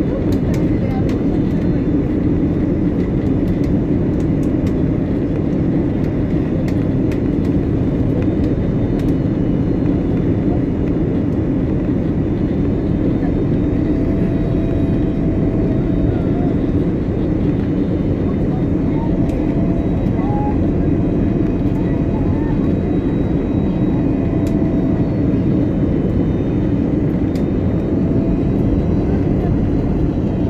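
Steady low rumble of an airliner's engines and rushing air, heard inside the passenger cabin during the final descent to landing.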